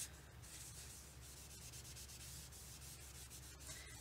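Faint rubbing of a crumpled paper tissue over stamped cardstock, buffing wet ink off the embossed image.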